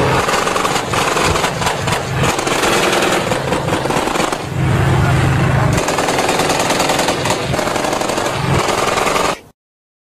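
Sustained automatic small-arms fire, a dense rapid rattle of shots with louder, deeper stretches near the start, in the middle and near the end, cutting off suddenly near the end.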